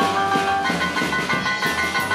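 Live band playing upbeat dance music, keyboard over drums with a steady beat.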